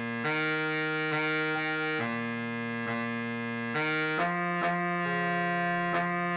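Computer playback of a baritone saxophone part: a single reed-like melody of steady, even notes without vibrato, moving from note to note about every half second to a second, with a small step down in pitch around the fourth second.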